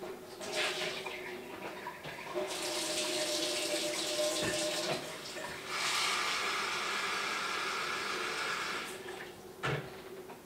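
Kitchen tap running into the sink in two spells of a few seconds each, with a short knock near the end.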